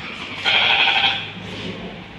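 A sheep bleating once, loud and lasting about half a second, starting about half a second in.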